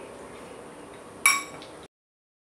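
A metal spoon clinks once against a glass bowl about a second in, a sharp strike with a short ringing tail, over faint room noise; the sound cuts off suddenly just before the end.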